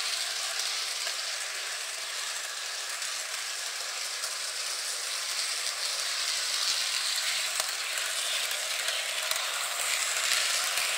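Hornby Blue Rapier model train running round its track: a steady whirring hiss from its small electric motor and plastic wheels, with a few faint clicks. The motor is not yet run in, which the owner takes as the reason for its rumbling.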